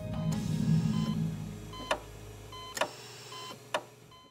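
Closing logo music sting: a low swelling whoosh, then short electronic beeps and three sharp clicks about a second apart, fading away at the end.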